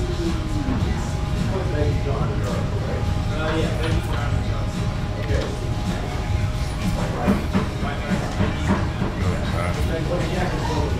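Restaurant dining-room ambience: a steady low hum with indistinct background voices and music.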